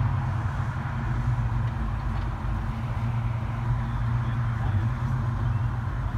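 Fox-body Ford Mustang's engine idling with a steady, low-pitched sound as the car creeps forward.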